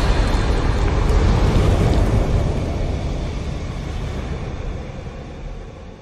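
Deep, noisy rumble of a fiery logo-reveal sound effect, the tail of a boom, holding for about two seconds and then fading out steadily.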